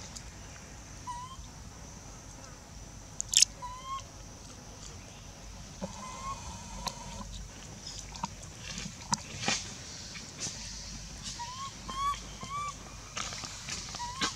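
Baby long-tailed macaque giving short, rising squeaky calls, a few seconds apart at first, then four in quick succession near the end, typical of an infant crying for its mother. A single sharp click about three seconds in is the loudest sound.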